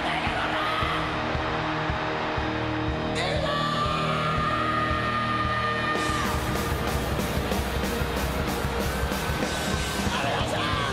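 Live hard-rock band playing, with a long held note from about three seconds in. Drums come in with steady hits about six seconds in.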